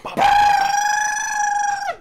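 A man's high-pitched falsetto cry, held on one steady note for about a second and a half, then cut off.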